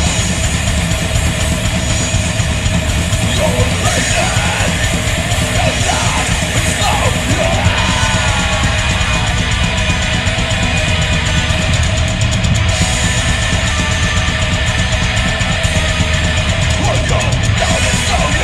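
Heavy metal band playing live: two distorted electric guitars, bass guitar and drum kit, steady and loud.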